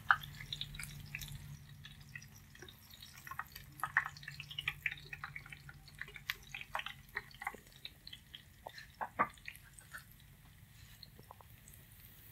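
Minced garlic frying in shallow oil, with scattered small pops and crackles as it turns golden.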